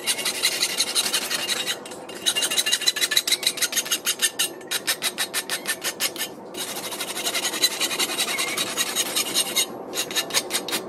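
Farrier's rasp filing back and forth across the edge of a steel horseshoe, a quick run of rasping strokes. It comes in several bouts broken by brief pauses, at about two, four and a half and six and a half seconds in.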